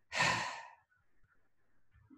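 A woman sighing once: a short, breathy exhale about half a second long near the start, fading out.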